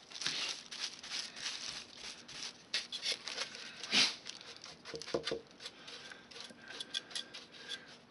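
A stiff paintbrush scratching and scuffing in irregular strokes over a rough plaster rock casting as brown paint is dry-brushed on, with one louder scuff about four seconds in.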